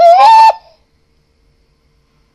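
A woman's high-pitched squeal of laughter, one held note that rises slightly and lasts about half a second, closing a burst of giggling.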